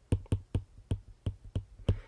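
Stylus tip tapping and clicking on a tablet's glass screen while handwriting, about ten sharp clicks at an uneven rate of roughly five a second.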